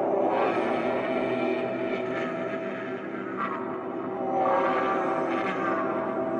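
Dark ambient horror-film score: a low drone of held tones that swells and fades, loudest about halfway through.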